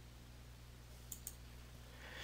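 A computer mouse button clicked once, a faint press-and-release about a second in, over near-silent room tone.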